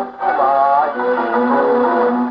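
A 1934 Victor 78 rpm shellac record played on an acoustic wind-up Victrola: a male baritone singing a Japanese film song over orchestral accompaniment, with a short breath-like dip at the start and then held, wavering notes. The sound is narrow and thin, lacking any high treble.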